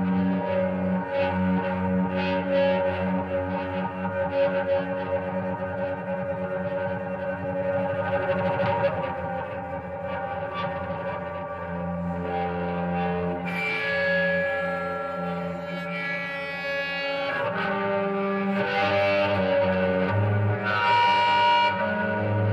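Archtop guitar bowed with a cello bow, sustaining layered droning tones rich in overtones. A brighter, higher layer of tones comes in a little past halfway.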